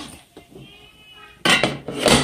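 A faint, high-pitched drawn-out cry in the background, then a loud clatter of metal cookware about one and a half seconds in.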